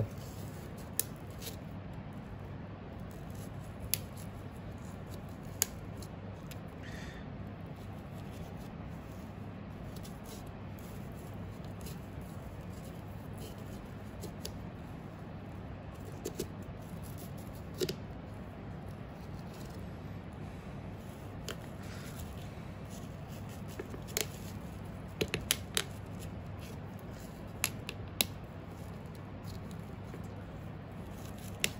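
Kitchen knife filleting a saddle of hare on a plastic cutting board: quiet cutting and scraping along the bone, with scattered sharp ticks and clicks, several close together near the end. A steady low hum runs underneath.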